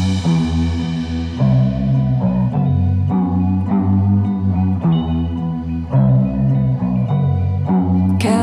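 Instrumental passage of an indie rock song: bass guitar and guitar playing a repeating plucked figure, with no vocals.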